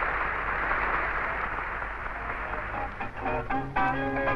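Crowd noise from a stadium audience, fading over the first three seconds, then a piece of music with short, separate notes begins.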